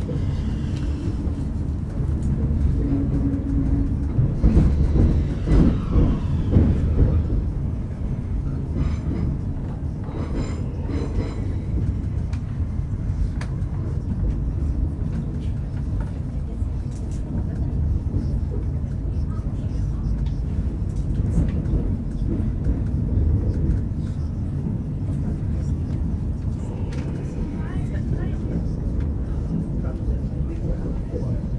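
Commuter train running, heard from inside the carriage as a steady low rumble, louder for a few seconds about four to seven seconds in.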